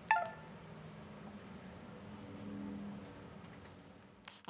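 A short, bright electronic chime rings once just after the start and dies away quickly, followed by a faint low hum.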